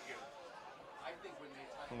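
Faint background chatter of several voices, with no close voice over it.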